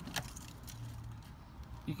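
Car key turned to the ignition-on position in a Citroen DS3: a sharp click just after the start and a faint jingle of the keys on the ring.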